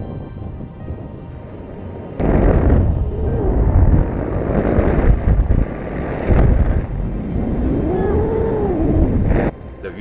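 Fierce wind buffeting the microphone of a camera carried by a tandem paraglider in flight: a loud low rumble with a few rising and falling howls. It starts abruptly about two seconds in and stops just before the end, after faint background music.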